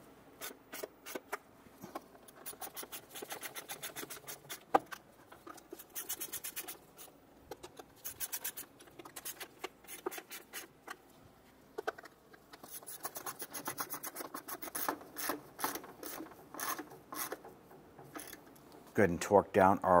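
Socket ratchet clicking in quick runs as the intake manifold bolts are run down, in several bursts with short pauses between them.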